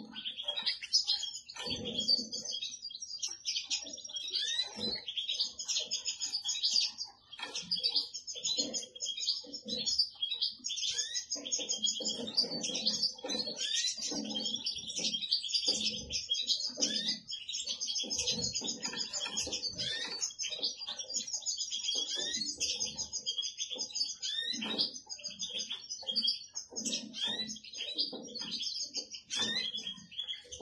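Balkan goldfinch (Carduelis carduelis balcanica) twittering song, a fast, unbroken run of high chirps and trills, with irregular softer low-pitched sounds beneath.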